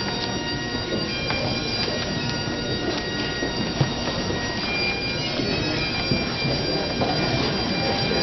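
Bagpipes playing a slow tune: long held notes over their steady drones.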